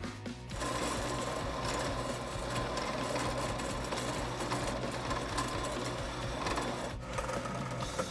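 Horizontal metal-cutting bandsaw running as its blade cuts through a drive shaft, a steady mechanical whir with a faint thin whine. It starts about half a second in and dips briefly near the end.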